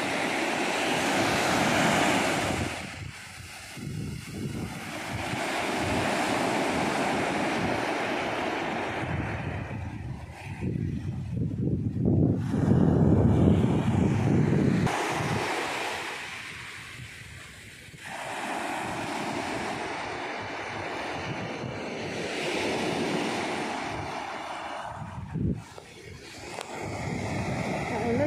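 Small ocean waves breaking and washing up the beach, the surf noise rising and falling every few seconds, with wind rumbling on the microphone.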